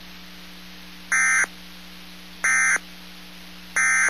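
Three short bursts of warbling digital data tones, about a second and a half apart, over a steady hum and hiss of radio static. They are the SAME end-of-message code of a weather radio alert, which signals that the alert broadcast is over.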